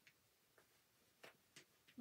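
Near silence with four or five faint, short ticks and rustles from fingers handling a small fabric piece stuffed with cotton balls.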